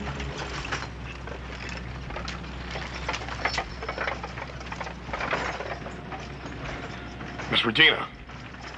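Horses and a hitched wagon team moving on a dirt street: irregular hoof clops with the creak and knock of harness and wagon wood.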